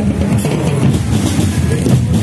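Marching drum band playing on the move: bass drums and snare drums beating over a continuous low rumble.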